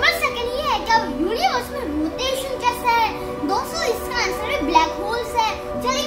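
A child talking, with background music of steady held notes underneath.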